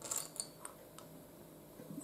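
Small plastic Lego bricks clicking against each other as a hand picks through a loose pile: a quick flurry of light clicks at the start, then two single clicks.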